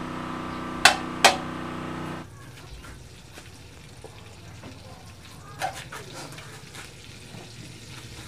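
A metal ladle pushing melting butter around an aluminium wok, with two sharp taps of metal on the pan about a second in, over a steady hum that cuts off after about two seconds. Then the butter sizzles faintly as it melts in the hot wok, with one more light tap.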